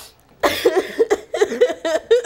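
A woman crying and laughing at once in short, choppy, breathy bursts, starting about half a second in.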